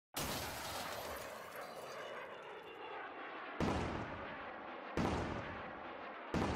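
Intro sound effect: a sudden loud bang that dies away slowly over about three and a half seconds, then two more sharp bangs about a second and a half apart, each fading out.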